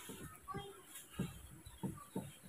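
A few soft taps and knocks, about four in two seconds, as a baby monkey handles a clear plastic cup of milk with a metal spoon standing in it. There is a faint short high chirp about half a second in.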